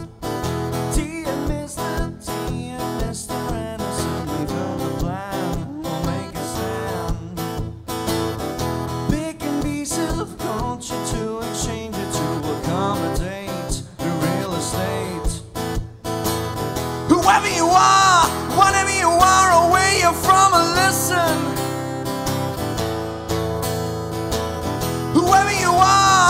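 Steel-string acoustic guitar strummed and picked live through a PA, playing a song's introduction. About seventeen seconds in, a higher, wavering melody line joins over the chords for a few seconds, and it returns near the end.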